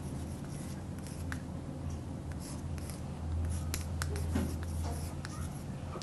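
Chalk writing on a blackboard: a string of short taps and scratches as the letters are written. A steady low hum runs underneath.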